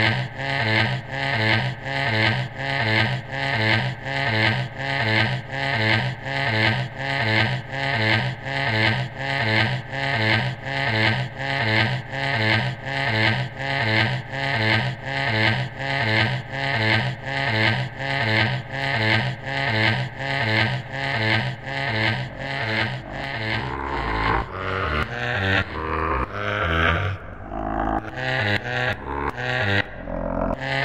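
Live-coded electronic music: a sample looping in a fast, even pulse over a steady low drone. About two-thirds of the way through, the pulse breaks up into irregular, randomly timed hits with more deep bass.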